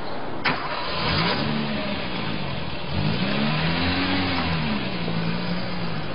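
A sharp clunk, then a car engine starts about a second in, revs up twice and settles to a steady idle.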